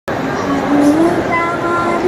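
A girl singing into a microphone through a PA, holding a long, slowly rising note without words, over steady hall noise. A few higher held tones join in the second half.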